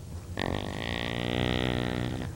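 A long, low, buzzing fart sound effect, starting about half a second in and held steady for nearly two seconds.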